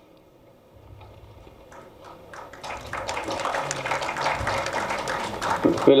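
Audience clapping, starting faintly about a second in and growing louder over the next few seconds.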